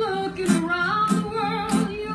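Acoustic cover song: a woman singing a melody with vibrato over an acoustic guitar strummed in a steady beat, about one stroke every 0.6 seconds.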